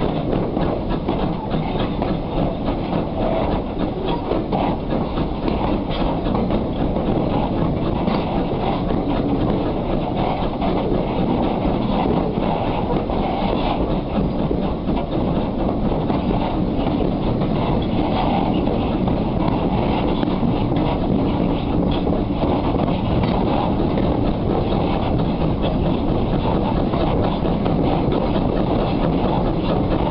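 Steam train hauled by ex-Caledonian Railway 0-6-0 No. 828, heard from a carriage window just behind the locomotive's tender: a steady, loud running rumble with the clatter of wheels on the rails.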